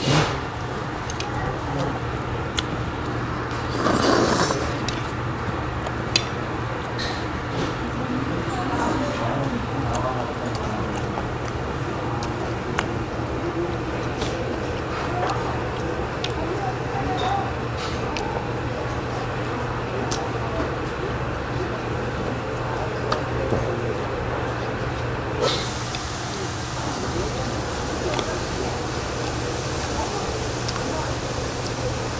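Eating at a table: chewing and scattered light clicks of metal chopsticks against dishes, over a steady low hum of room noise. A louder rushing burst about four seconds in.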